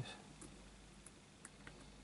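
A few faint, sparse clicks of a hook pick working the pins of a six-pin Yale euro cylinder lock under light tension.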